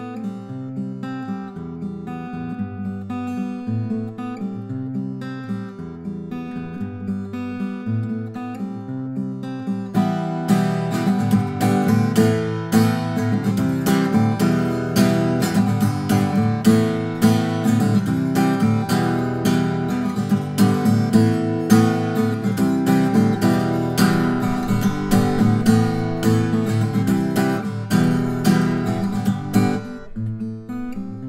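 Small-body 12-fret acoustic guitar with a cedar top and cocobolo back and sides, fingerpicked as a solo piece. The playing turns louder and fuller about ten seconds in.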